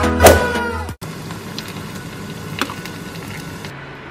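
The tail of an intro music sting, with a strong hit about a quarter second in, cutting off abruptly at about one second. It gives way to low room noise with two faint clicks.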